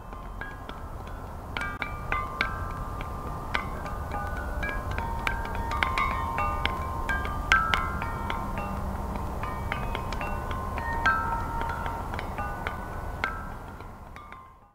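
Chimes ringing in irregular, overlapping strikes over a low steady rumble, fading out near the end.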